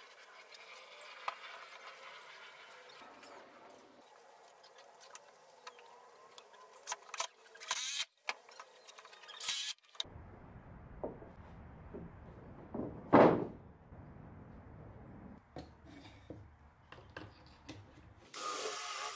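Quiet workshop handling noises from putting a wooden bench together: scattered small clicks and taps at first. Partway through, a low hum comes in, with one louder knock about 13 seconds in.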